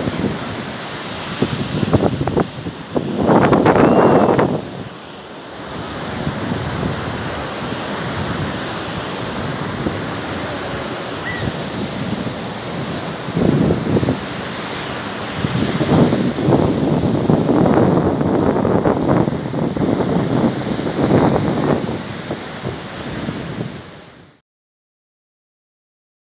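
Surf breaking and washing up a sandy beach, a steady hiss of waves, with gusts of wind buffeting the microphone in loud, rumbling bursts about three seconds in and again through much of the second half.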